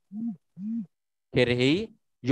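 A man's voice: two short hums, each rising and falling in pitch, then a brief spoken word about a second and a half in, with dead silence in between.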